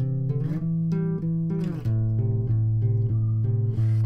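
Electric bass guitar played fingerstyle, the thumb and index finger plucking the D and G strings alternately in a steady, even two-note pattern. The notes ring into each other, and the pattern moves to new frets a couple of times.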